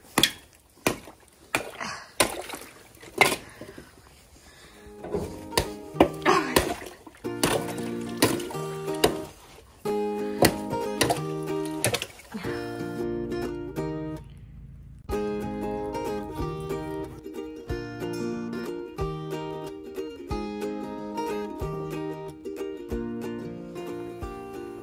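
A wooden stick knocking and splashing in a galvanized stock tank, breaking up thin ice on the water, for the first several seconds. After that, background music with plucked strings and a steady beat takes over.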